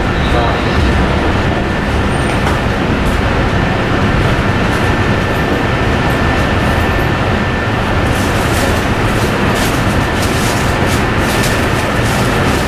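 Inside a Tokyo Metro Chiyoda Line commuter train running between stations: steady loud running noise with a thin steady high tone. A run of light clicks and rattles comes in during the last few seconds.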